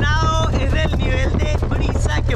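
Small single-engine propeller plane's engine running steadily on the ground before taxiing, heard from inside the cabin, with the propeller's wind buffeting the microphone. A man's voice cries out at the start.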